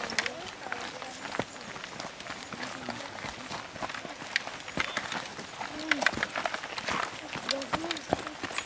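Many irregular footsteps scuffing and crunching on a loose, dry dirt and gravel slope as a group walks downhill, with scattered voices.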